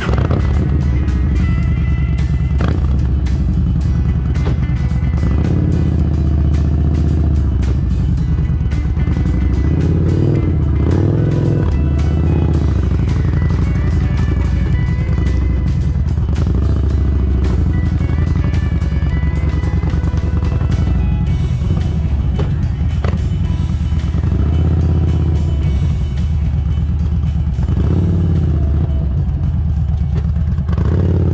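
Background music with a steady beat over the low, steady running of a vehicle's engine as it moves slowly towing a small camper trailer.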